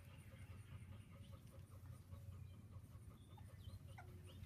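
Near silence: a low steady hum, with faint sounds of Cavalier King Charles Spaniel puppies playing.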